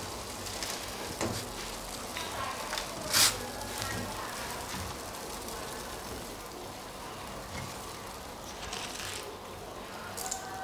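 Water at a rolling boil in a stainless steel pot, a steady bubbling hiss, while dry noodle blocks soften in it. A few small knocks sound over it, the sharpest about three seconds in.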